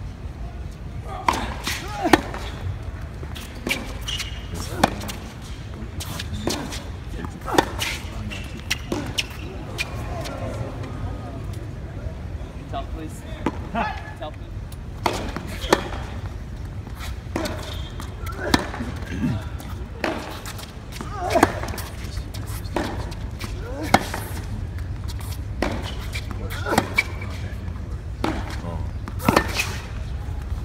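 Tennis balls struck by rackets and bouncing on a hard court during a rally: sharp pops about every second, over the low chatter of a stadium crowd.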